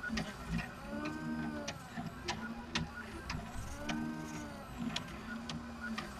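Colido 3.0 3D printer running a print, its stepper motors whining as the print head moves. The pitch swells up and falls back twice, and light ticks are scattered through the sound.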